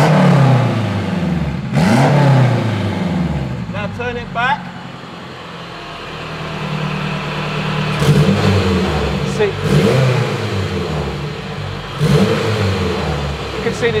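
Turbocharged Honda K20 four-cylinder engine being blipped repeatedly through an open electronic exhaust bypass valve, the exhaust skipping the silencers and coming straight out of the bypass pipe. A few sharp revs rise and fall, the engine settles to idle in the middle, then revs several more times.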